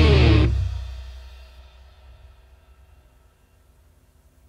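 Symphonic metal band ending a song: the full band with distorted electric guitar stops about half a second in, and the last chord rings out, fading away over the next few seconds.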